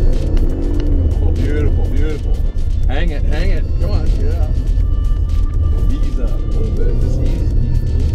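Background music and voices over the steady low rumble of a 2019 Acura RDX SUV being driven off from a start on a loose gravel course.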